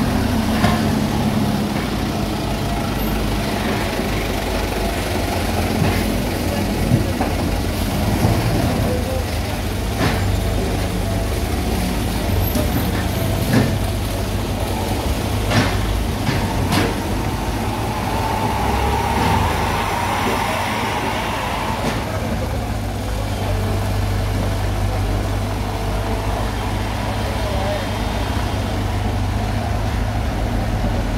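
Komatsu PC75 excavator's diesel engine running steadily under load, with several sharp knocks between about 7 and 17 seconds in as soil and rubble are dumped into a steel dump-truck bed.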